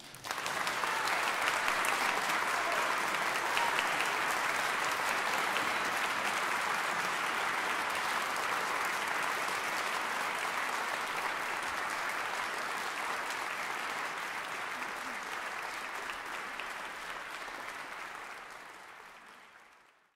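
Concert audience applauding: the clapping starts right away, holds steady, and dies away over the last two seconds.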